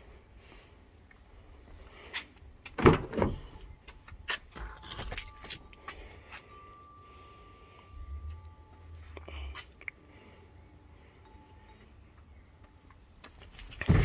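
Handling sounds of a ute's driver door being opened: a loud clunk about three seconds in, followed by scattered clicks and jangling keys. A faint steady tone runs for a few seconds in the middle.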